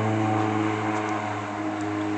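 A steady, low machine hum holding one pitch throughout.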